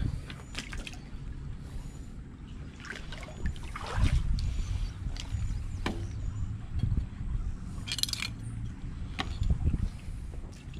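Several sharp knocks and a light metallic clink as a recovered metal spoon is handled and brought to a cloth tote bag, over a steady low rumble.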